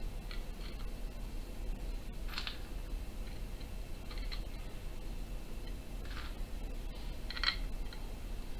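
A handful of light clicks and taps, scattered irregularly, as hands handle a wooden banjo pot and set small screws into its pre-drilled holes.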